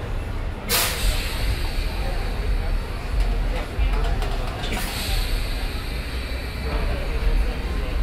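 Ride noise inside an electric shuttle bus on the move: a steady low rumble from the road and the bus body. It is broken by a short burst of hiss a little under a second in and a weaker one near five seconds.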